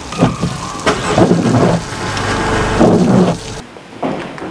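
Car engine starting up and running with a low rumble over a steady hiss, with a couple of knocks in the first second; the sound cuts off abruptly shortly before the end.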